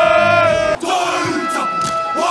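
A group of men shouting one long, steady held yell that cuts off abruptly under a second in, followed by choppy shouting and chanting voices.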